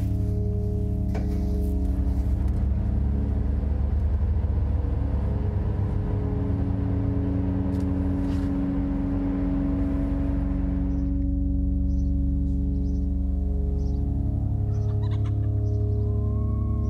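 Background music with steady sustained tones. From about two seconds in until about eleven seconds it lies over the noise of a car driving, which then cuts off. A few short chirps come near the end.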